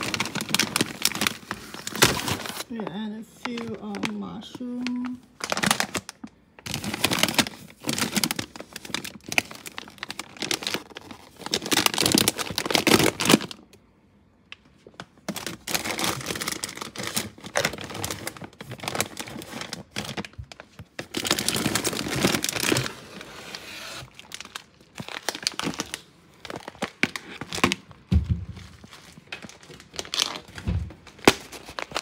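Plastic food packets and bags crinkling and rustling in irregular bursts as they are handled and shifted about on a pantry shelf.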